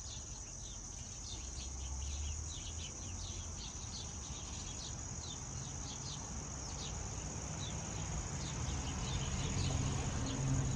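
Outdoor insect chorus, crickets: a steady high-pitched trill with many short chirps repeating over it. A low rumble sits underneath, swelling about two seconds in and again near the end.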